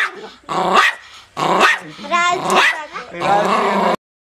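Small white spitz-type dog barking and growling in several short, loud bursts.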